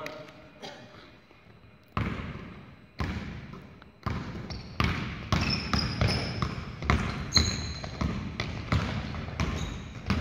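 Basketball dribbled on a hardwood gym floor, each bounce echoing in the hall: slow bounces about a second apart, then quicker dribbling from about halfway through as the player drives, with short sneaker squeaks on the floor.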